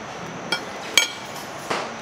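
A metal fork clinking against a plate three times, about half a second apart; the middle clink is the loudest and rings briefly.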